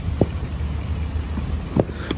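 A steady low rumble of outdoor background noise, with two faint short knocks, one shortly after the start and one near the end.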